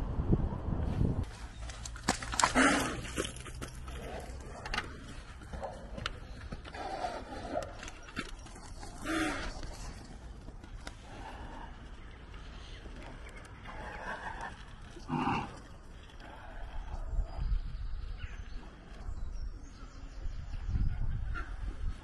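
A few short farm-animal calls spaced out over several seconds, the loudest about two and a half seconds in, with others around nine and fifteen seconds in.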